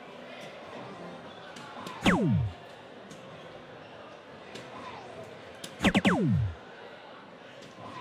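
Electronic soft-tip dartboard hit sounds: a single falling electronic sweep about two seconds in as a dart scores a single 20, then three sweeps in quick succession about six seconds in, the board's sound for a triple 20. A steady murmur of the hall lies underneath.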